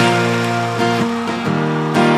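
Acoustic guitar strumming chords, changing chord several times, as the song's opening.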